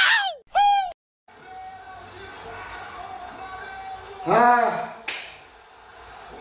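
A man's short wordless vocal outbursts: two loud falling whoops at the start, then another brief shout about four seconds in, followed right after by a single sharp hand slap or clap. A short dead-silent gap about a second in, with faint steady background sound after it.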